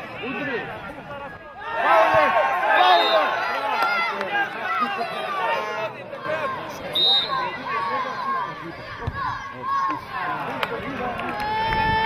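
Several men shouting and calling out at once during football play, their voices overlapping. Near the end a child's long, held shout.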